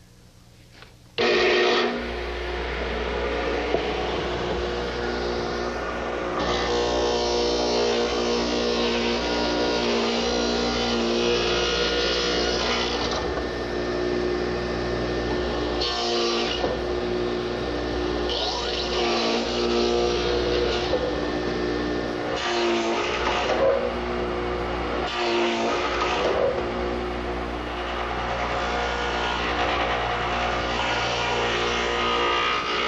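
Radial arm saw fitted with a stacked dado head starting up about a second in and running steadily with a low hum, growing louder and harsher in several separate passes as the dado head cuts an angled dado into the wood. Light instrumental music plays along.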